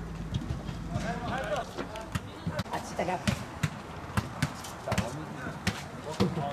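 Futsal players shouting to each other on the court, with a scatter of sharp knocks from the ball being kicked and feet on the artificial turf.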